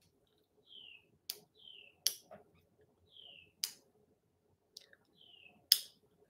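Four sharp clicks spread through a quiet room, the last near the end the loudest, while a small bird outside gives faint short falling chirps about once a second.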